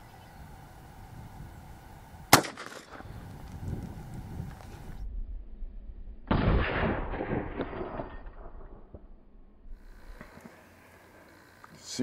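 A single 12-gauge shotgun shot about two seconds in: a sharp crack with a short echo trailing after it. About six seconds in comes a second, duller boom that fades away over a couple of seconds.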